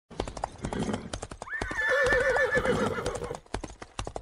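Horse hooves galloping in a quick run of hoofbeats. About a second and a half in, a horse gives a wavering whinny that lasts about two seconds.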